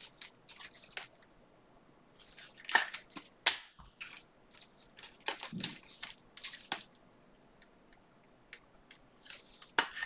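Plastic trading-card pack wrappers crinkling and tearing open, with cards being handled, in irregular bursts of crackle and sharp clicks; the loudest come about three seconds in.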